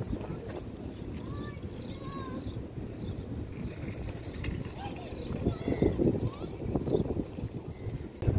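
Wind blowing across the phone's microphone, a steady low rumble, with faint voices in the distance.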